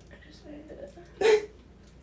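A person's voice: faint murmuring, then one short, loud vocal yelp or hiccup-like burst about a second in.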